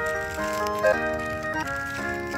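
An electronic piano mat toy playing a simple synthesized melody through its built-in speaker, the notes sustained and changing every fraction of a second.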